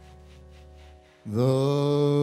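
Closing bars of a slow jazz ballad from a small band with a male singer. A soft held chord fades away, then about a second in a long held note swells in loudly.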